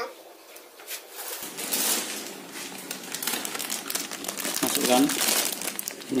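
Clear plastic bag of caustic soda (sodium hydroxide) flakes being handled, crinkling and rustling continuously from about a second and a half in.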